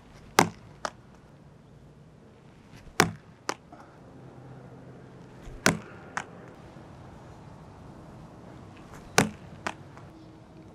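A 20-ounce weighted ball thrown against a wall four times, evenly spaced. Each throw lands with a sharp hit, followed about half a second later by a lighter second knock as the ball drops onto the concrete.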